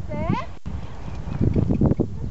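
Hoofbeats of a horse cantering on grass, heavy irregular thuds that grow stronger in the second half, over wind on the microphone. Near the start a person's short rising shout rings out.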